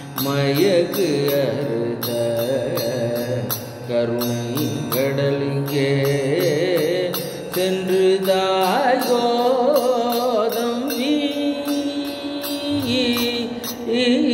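A man singing a Tamil devotional song unaccompanied by words in the transcript, his voice holding long notes that waver and glide up and down in ornamented runs.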